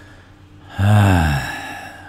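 A man's voiced sigh, starting just under a second in and lasting about a second, falling in pitch and fading out.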